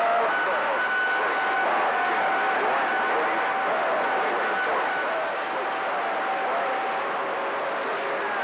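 CB radio receiver on channel 28 picking up a steady hiss of band noise with faint, garbled voices of distant skip stations buried in it. A steady whistle tone sits over the noise for about the first five to seven seconds, typical of two carriers beating against each other.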